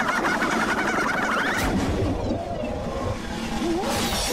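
Cartoon spinning sound effect: a fast, warbling whirr that cuts off about a second and a half in. It gives way to a rushing whoosh, with a short rising tone near the end.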